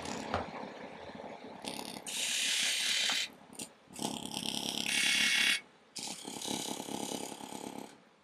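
A pencil scratching along the surface of a green, spalted aspen lathe blank, marking layout lines. It comes in three strokes of one to two seconds each.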